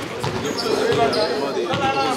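Handballs bouncing with several short thuds on a sports-hall floor, under the overlapping voices of players talking.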